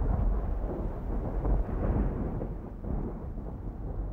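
A deep, crackling rumble like rolling thunder, dying away gradually.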